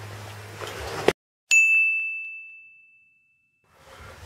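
A single high bell ding, an edited-in sound effect, struck once and fading out over about two seconds. Before it, about a second of room noise with a low hum, which cuts off abruptly.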